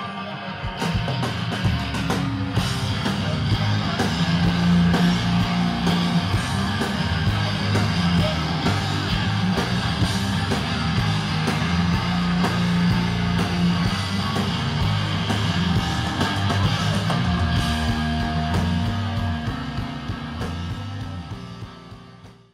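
Live rock band playing loud with electric guitars, bass guitar and drum kit. The drums come in about a second in, and the sound drops away at the very end.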